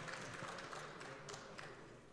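Faint background noise of a large assembly chamber, with a few light taps.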